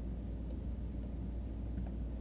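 Steady low hum of a 2013 Nissan Leaf's air conditioning just switched on, heard from inside the cabin.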